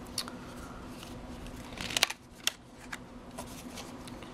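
Cardboard and paper packaging being handled: a few short crinkles and snaps, the loudest cluster about halfway through and another soon after, over a faint steady hum.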